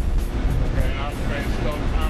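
A man speaking into a handheld two-way radio, his words not clear, over a heavy, steady low rumble, with background music.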